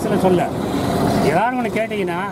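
A man speaking in Tamil, giving a statement into press microphones, over a low steady background rumble.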